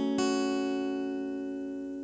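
Acoustic guitar's closing chord: strummed once just after the start, then left to ring and slowly fade.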